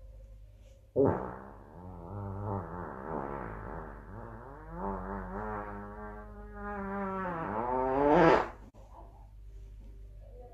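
A long, drawn-out fart, starting abruptly about a second in and running for some seven seconds, its pitch wobbling up and down. It rises to its loudest near the end and then cuts off suddenly.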